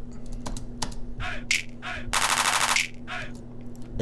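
Sampled drum-machine clap played back as a rapid roll in a fast, even run of under a second, about two seconds in, after a few single sharp hits. Every clap hits at the same full velocity, so the roll sounds stiff and harsh.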